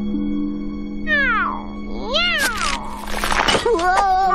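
A cartoon character's wordless yelling cries over background music: one long falling cry about a second in, then several shorter cries that rise and fall, and a wavering one near the end.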